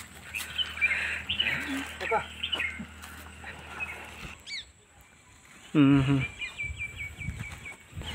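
Small birds chirping in the background, with a quick series of repeated high notes in the second half. A man murmurs 'hmm' once, about six seconds in.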